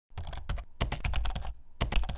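Rapid keyboard-typing clicks in two quick runs, with a short lull about one and a half seconds in, set over dead silence like an edited sound effect.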